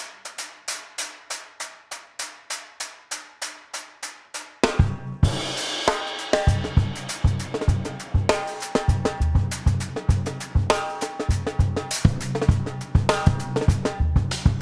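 Acoustic drum kit played solo: light, even stick strokes about four a second with no bass drum, then about four and a half seconds in the full kit comes in with a cymbal crash and bass drum and carries on in a busy funk groove.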